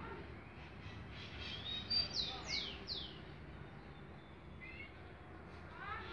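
A bird calling: a quick run of high notes, each sliding steeply downward, about two seconds in, then two short notes about five seconds in.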